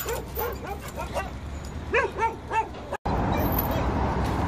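A dog whining and yipping in a quick run of short, rising-and-falling calls, the excited greeting of a dog that recognises a person it has missed. About three seconds in it cuts off abruptly and a steady rushing noise takes over.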